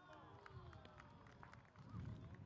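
Faint field sound from the pitch: several players' voices shouting across the field, with light quick footsteps of running on the artificial turf.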